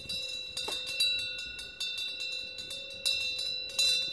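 Metal wind bell (Korean temple pungyeong) ringing in the wind: a steady ringing tone with several overtones that swells again about three seconds in, with faint clicking over it.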